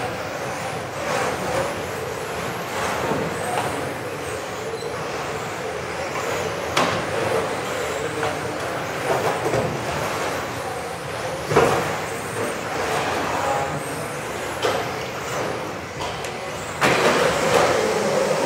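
Electric radio-controlled touring cars racing on an indoor hall track: a steady mix of motor whine and tyre noise, with high whines rising and falling as the cars speed up and brake, and a couple of sharp knocks from cars hitting the track edges. The sound gets louder just before the end.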